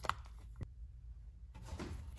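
Leather hole punch squeezed through leather: one sharp click as it cuts through, then a fainter click about half a second later.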